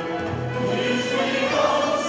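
Mixed choir singing a Turkish classical song in sustained lines, with lower voices joining about half a second in.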